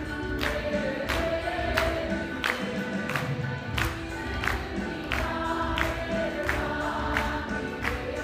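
Mixed group of men and women singing a devotional song in unison, accompanied by a harmonium and tabla keeping a steady beat.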